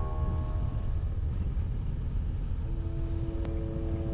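BMW R1200RT boxer-twin motorcycle on the move: a rough, fluttering low rumble of engine and wind buffeting on the bike-mounted microphone. Faint music begins to come in near the end.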